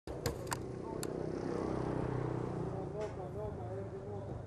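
Street sound: a vehicle engine running steadily, with people's voices in the background from about halfway through. A few sharp clicks come in the first second and another about three seconds in.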